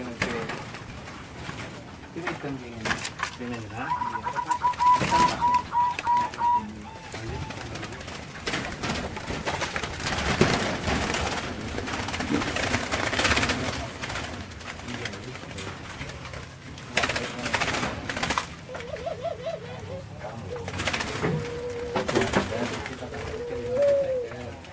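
Zebra doves (perkutut) cooing in their aviary cages: a quick run of about eight repeated notes about four seconds in, then further coos later on.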